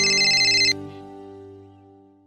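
Electronic phone-ringing sound effect: a fast, high trill that cuts off abruptly under a second in, over a held music chord that fades out.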